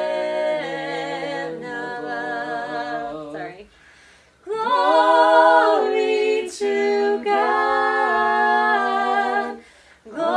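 A small group of voices singing a cappella with long held notes, breaking off for about half a second near the four-second mark and then starting again.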